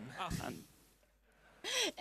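Speech fragments: a short voiced sound with a breath into the microphone, a pause of about a second, then a voice starts again near the end.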